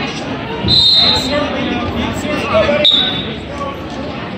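Referee's whistle blown twice, two short steady blasts about two seconds apart, over voices in a large gym. A single thud comes just before the second blast.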